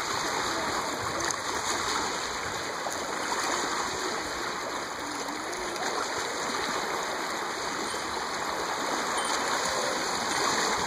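Shallow water washing and splashing steadily as small waves run over a concrete ramp and a big hand-held catfish churns the water.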